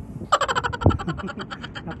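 A person laughing in a rapid, high-pitched giggle, starting shortly in and running on for about a second and a half, with a single thump partway through.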